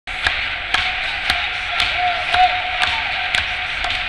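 Rhythmic clapping from the spectators, about two claps a second, over the steady noise of the crowd, the usual clap-along for a pole vaulter's run-up.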